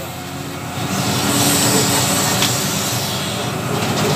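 Wheel loader's diesel engine working under load as the bucket pushes through brush and branches. The sound swells about a second in and holds steady.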